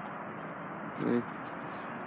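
Steady outdoor background noise, with a brief voiced murmur, like a hesitation sound, about a second in.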